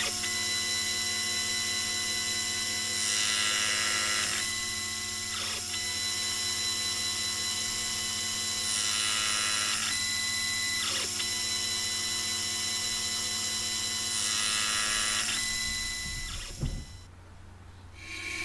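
Sherline milling head's motor running with a steady hum while a stepper-driven CNC rotary table indexes a brass blank for cutting ratchet teeth. A thin high whine breaks off for about a second three times, and stretches of louder hissing come every five or six seconds. The sound drops away about a second before the end.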